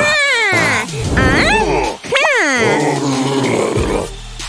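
Cartoon characters' wordless voice sounds: three or four sliding cries, the first swooping down in pitch and the later ones rising and falling, over background music.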